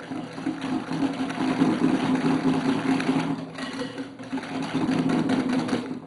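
Wire whisk beating eggs, sugar and corn flour in a glass bowl: rapid, continuous scraping and ticking of the wires against the glass, over a steady low hum.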